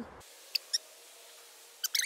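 A quiet hiss with two very short, faint high squeaks about half a second in, and two more just before the end.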